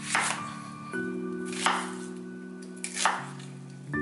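Kitchen knife cutting through a red onion down onto a wooden cutting board: three cuts about a second and a half apart, over soft background music.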